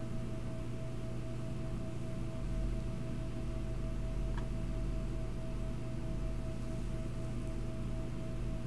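Steady electrical hum with a constant thin whine above it and low rumble underneath, unchanging background noise. One faint tick about four seconds in.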